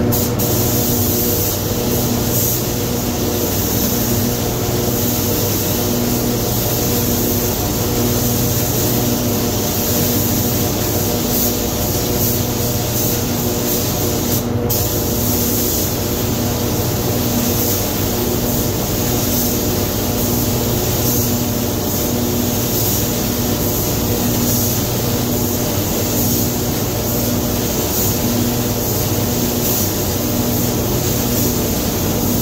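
Air-fed automotive paint spray gun hissing steadily as paint is laid onto a car's side panels, cutting out for a moment about halfway through. Under it runs the steady hum of the paint booth's ventilation.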